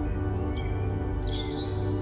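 Soft ambient background music of held, steady tones, with bird chirps mixed in: a quick run of falling chirps about halfway through.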